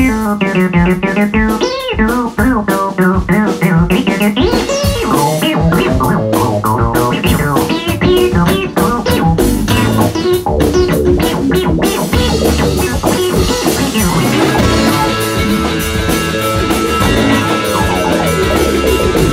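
A rock band playing: guitar and bass guitar with drums. About twelve seconds in, the sound thickens as cymbals come in.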